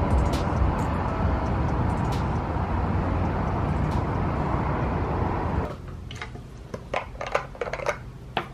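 Steady low outdoor rumble of light, distant expressway traffic. About six seconds in it gives way to a quieter room with a few small sharp clicks and taps of plastic skincare jars being handled.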